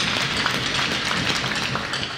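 Crowd applauding: many hands clapping steadily.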